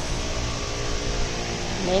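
Steady ventilation noise, like an air-handling fan running, with a faint low hum.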